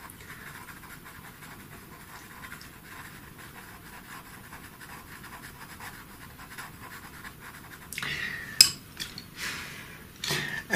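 Pastel pencil scratching lightly over textured paper in short shading strokes. About eight seconds in there is a louder rustle with a sharp click.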